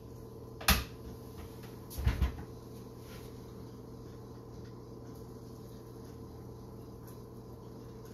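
A blender jar being handled: a sharp clack as it comes off its motor base about a second in, then a short cluster of knocks around two seconds, with only a faint steady hum after that.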